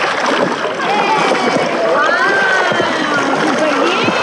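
Steady splashing of a child swimming face-down and flutter-kicking, heard from a camera at the waterline, with high gliding voices over it from about a second in.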